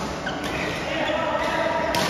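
Doubles badminton play in an echoing sports hall: shoes on the court floor and a sharp hit near the end, with voices talking in the background.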